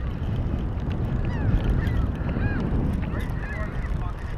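Steady low rumble of wind on the microphone over open water, with several faint, short bird calls scattered through it.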